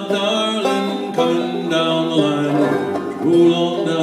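A banjo picked and strummed as the accompaniment to a folk song, with a man singing held notes of the chorus over it.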